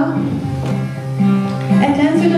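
Acoustic guitar played live between sung lines, its low notes ringing steadily, with the singer's voice coming back in near the end.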